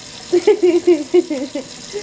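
Kitchen tap running into a stainless steel sink while hands are rubbed and rinsed under the stream. A woman laughs in a quick string of short laughs from about a third of a second in until just past one second.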